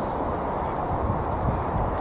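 Steady low outdoor rumble with no distinct events, the kind made by wind on the microphone and distant traffic together.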